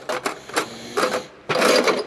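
Loose steel R-clips (spring cotter pins) clinking and rattling in a drawer tray as a hand rummages through them: a quick run of small metallic clicks, busier and louder about one and a half seconds in.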